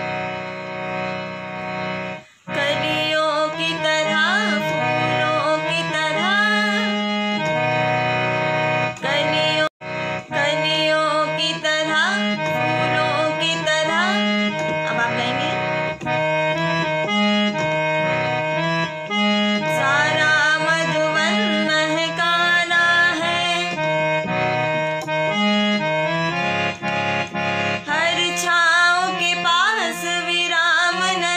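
Harmonium playing the melody of a song over repeating low chord notes. A woman's singing voice is with it near the end.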